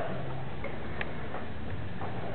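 Steady background hiss with a few scattered light ticks, roughly one a second.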